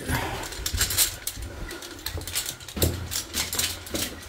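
Footsteps on loose rock and gravel in a narrow mine tunnel, several uneven steps in a row.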